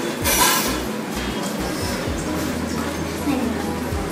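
A brief clink and rustle of kitchen things, a measuring cup and a plastic packet of sugar being handled, about half a second in, over a steady low hum.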